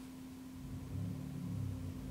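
A low rumble that swells about a second in, over a steady low hum.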